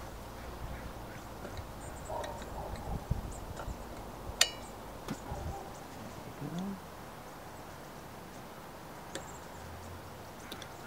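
Small screwdriver prying at a plastic wiper-arm bolt cap: light scraping and small ticks, with one sharp click about four and a half seconds in.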